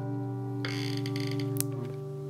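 Acoustic guitar's final chord ringing on and slowly fading. A scratchy noise on the strings comes in about two-thirds of a second in, and a sharp click sounds near the end.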